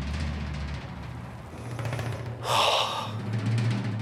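Dramatic background music with low drums and a sustained low drone, with a brief loud swell about two and a half seconds in.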